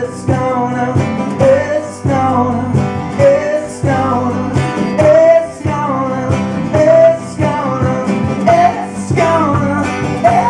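An acoustic band playing live: strummed acoustic guitars with a steady rhythm under sung vocals.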